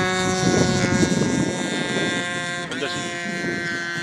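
10 cc petrol engine of a model Beagle B121 running in flight with a steady drone, stuttering about a second in and shifting pitch near three seconds in. The stutter is one it has always had, between half and full throttle.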